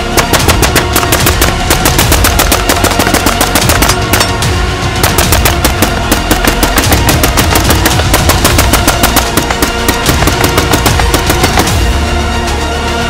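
Rapid rifle gunfire from AR-15-pattern carbines, many shots a second in dense overlapping strings, laid over background music.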